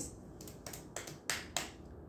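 A few light handling clicks and taps, about four of them, the loudest two in the second half.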